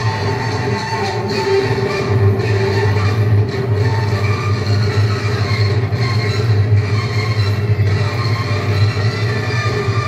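Loud dance music with a heavy, steady bass.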